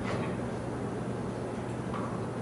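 Steady room background noise with a low, even hum and a faint click at the very start.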